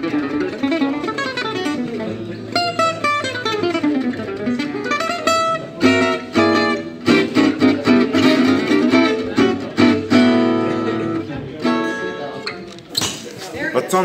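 Altamira gypsy jazz acoustic guitar, on its stock ebony bridge shaved down, played solo with a pick. It starts with quick single-note runs, then hard strummed chords from about halfway, with the chords left ringing near the end.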